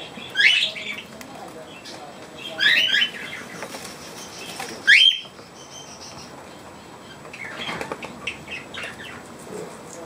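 Pet budgerigars and cockatiels in an aviary: three loud, short rising calls about two seconds apart, then softer scattered chirping. A bird's wings flutter near the start.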